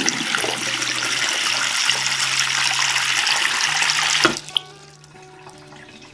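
Tap water running steadily into a ceramic bathroom basin and going freely down the plughole, the drain now cleared by caustic soda. The flow stops suddenly about four seconds in, leaving the last water draining quietly.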